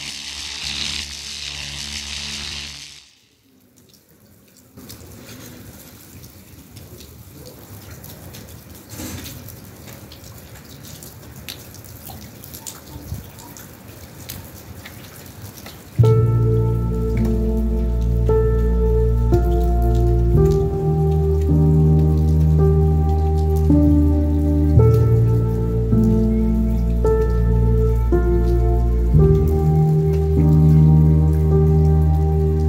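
A short electronic intro sound lasting about three seconds, then rain falling steadily on wet paving, with scattered drips. About halfway through, background music with sustained low chords comes in and becomes the loudest sound, with the rain still underneath.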